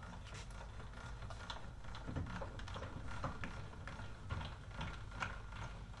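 Folding trailer tongue jack being hand-cranked to raise the trailer's coupler off the hitch ball, its gears giving a quiet, uneven clicking.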